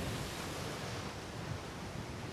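Steady hiss of distant ocean surf and wind, with no distinct events.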